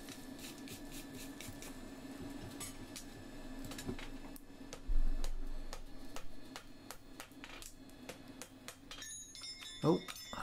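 Blacksmith's tongs and a hot steel horseshoe handled on an anvil: faint metal clinks over a steady low hum, one heavier knock about five seconds in, and a light metallic ring near the end.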